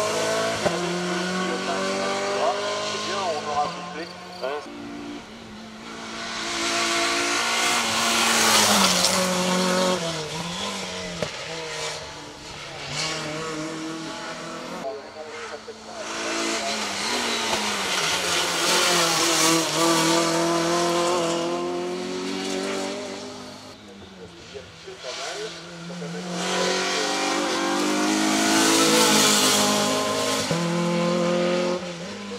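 Renault Clio 2 Cup race car's two-litre four-cylinder engine at full throttle, its pitch climbing and dropping again and again through gear changes and corners. It swells loud three times as the car comes past, about eight seconds in, around twenty seconds and near the end, fading between.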